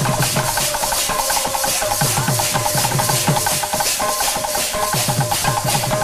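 Kirtan ensemble playing an instrumental passage: small brass hand cymbals clash in a fast, steady rhythm over a barrel drum whose bass strokes slide down in pitch, with a held melodic line above.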